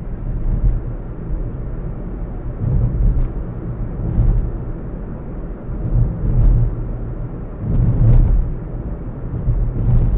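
Low rumble of a car driving at road speed, heard from inside the cabin, swelling and easing every couple of seconds.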